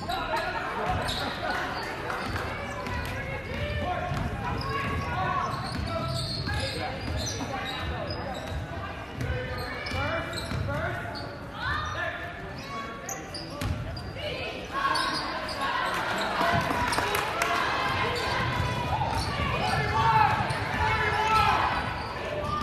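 Basketball bouncing on a hardwood gym floor during play, under a continuous mix of spectators' and players' voices calling out, echoing in a large gym. Louder from about fifteen seconds in.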